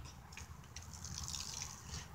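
Faint trickling and dripping of water squeezed out of a plastic water bottle as it is drunk in a rush and spills.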